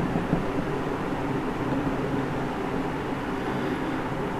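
Steady electric-fan hum in a room: a low, even drone with a few fixed tones and no change in level.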